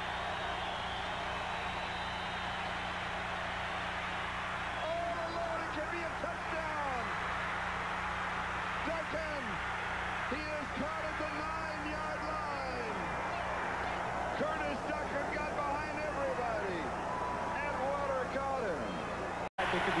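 Stadium crowd noise from a football broadcast: a steady wash of crowd sound, with scattered shouts and whoops rising and falling from about five seconds in, over a steady low electrical hum. The sound drops out for an instant near the end.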